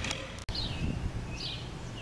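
Steady outdoor background noise with a bird giving short chirps, each dropping in pitch, repeated three times; the sound drops out briefly about half a second in.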